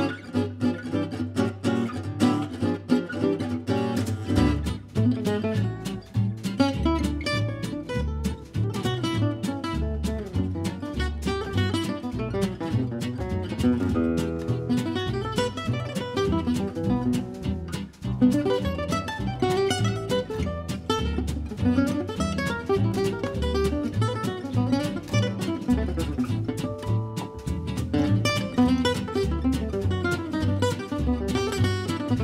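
Instrumental jazz from a quartet of two guitars, double bass and drums: the guitars play busy lines over stepping bass notes and light cymbal work. The music comes in abruptly at the very start.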